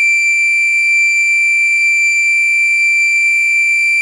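Homemade 555 timer oscillator circuit played through an amplifier, giving a loud, steady, high-pitched electronic tone with a series of higher overtones.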